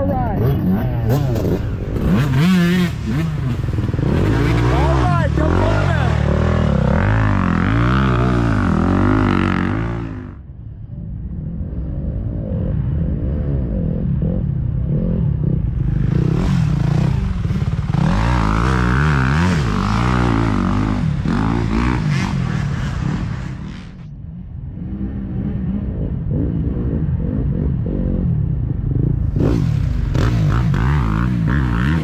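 Dirt bike engines revving up and down as riders pass through a woods section, the pitch rising and falling with the throttle. The sound dips briefly about ten seconds in and again around twenty-four seconds, between one bike leaving and the next one coming.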